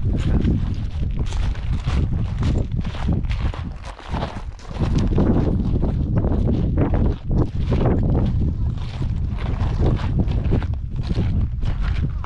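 Footsteps of people walking on a loose volcanic cinder and lava-gravel path, crunching at a steady pace of about two steps a second. A steady low rumble runs underneath, with a brief lull about four seconds in.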